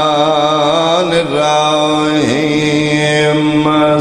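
A man's voice chanting a religious recitation in long, drawn-out notes with a wavering vibrato, amplified through microphones. It holds two long notes, with a short break about a second in.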